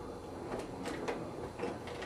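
Faint scattered clicks and rustles of fingers moving bundled wires over a spa pack's circuit board.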